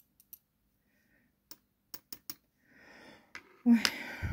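Light, sharp clicks of tapping on vintage clip-on earrings with blue moulded stones, about eight scattered taps, to test what the stones are made of, which the owner takes for glass.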